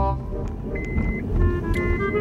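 Low, steady rumble of a car's engine and tyres heard inside the cabin while driving, under background music with a few held notes.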